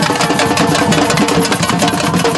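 Samba percussion band playing a fast, dense groove: tambourines jingling in rapid strokes over the beat of carried drums.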